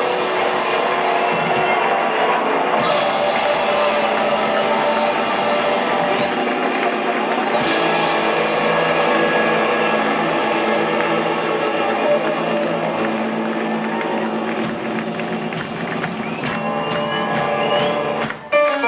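Live rock band playing, with electric guitars, keyboard and drum kit, recorded from within the audience.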